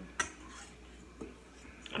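A metal utensil clinks sharply against a stainless steel bowl just after the start, with a fainter tap about a second later.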